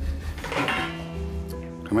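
The metal lid of a bathroom waste bin clinks open about half a second in. Background music with a low drone and a held chord runs beneath it.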